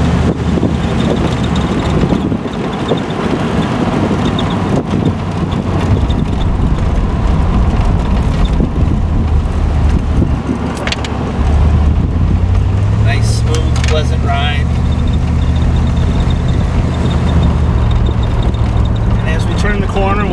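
A 1964 Corvette's 327 cubic-inch V8 with Powerglide automatic, heard from the driver's seat while the car is driving, with road noise under it. About eleven seconds in, the engine note steps up louder and higher as the car pulls harder, then holds there.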